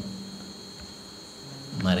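A steady high-pitched background tone with faint hiss in a pause between a man's spoken words. His voice starts again near the end.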